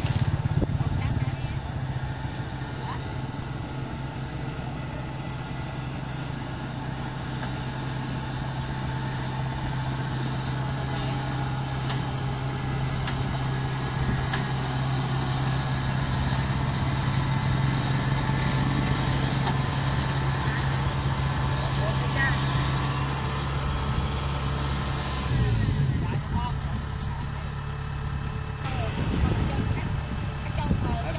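Farm diesel engine running steadily at low revs, its note changing abruptly about 25 seconds in.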